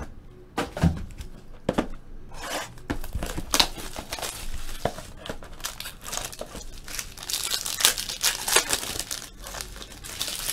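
Foil and plastic wrapping of a trading-card pack being torn open and crumpled by hand: a few scattered clicks at first, then dense crinkling from about two seconds in, busiest near the end.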